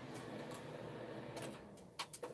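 Electric space heater's fan blowing steadily with a low hum, then switched off about one and a half seconds in, its rushing noise fading away.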